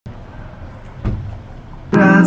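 Street traffic noise outside a venue, a low rumble with one louder thump about halfway through. Just before the end it cuts abruptly to loud live band music with guitar.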